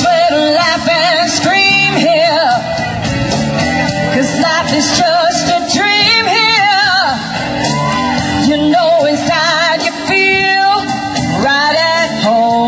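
A solo singer belting a rock vocal through a microphone with strong, wide vibrato over a loud rock backing.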